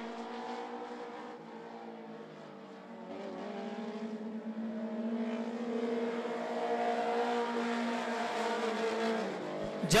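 Several dirt-track stock car engines running hard together as the field laps the oval, their steady tones shifting slightly in pitch. They fade a little, then grow louder again as the cars come round.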